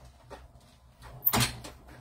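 A single loud clunk about a second and a half in, after faint handling knocks, from the embossing sandwich being run through a hand-cranked Stampin' Up! Cut & Emboss machine.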